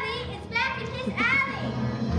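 Children's high-pitched voices calling out on stage, in two short bursts: one at the start and one, with a rising pitch, just past the middle.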